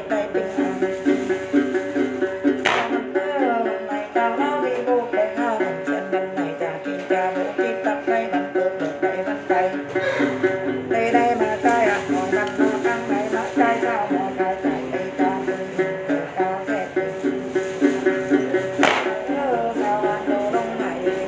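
A đàn tính, the long-necked gourd lute of the Tày and Nùng, plucked in a steady repeating pattern under a woman's Then chant sung in a wavering, ornamented line. Two sharp clicks stand out, about three seconds in and near the end.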